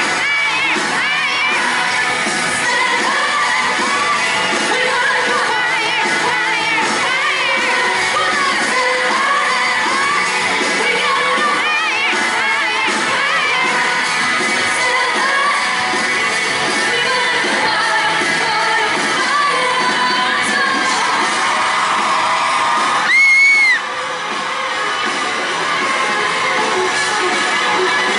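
Indie rock band playing live in a hall: a singer over drums, guitars, bass and keyboard, with the crowd audible under it. About 23 seconds in there is a brief loud high-pitched scream, the loudest moment.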